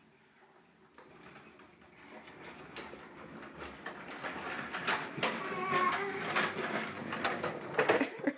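Plastic baby walker's wheels rolling across a hardwood floor, growing steadily louder as it comes closer, with scattered clicks and knocks.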